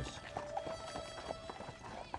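Faint horse hooves clip-clopping on a street, a few scattered hoof knocks, with a faint steady tone held underneath.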